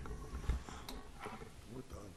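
A lull in a meeting room: faint murmured voices over a low room hum, with a couple of light knocks about half a second and a second in.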